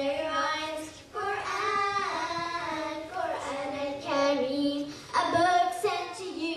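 A group of children singing together, holding long notes that rise and fall in phrases of about two seconds, with short breaks between them.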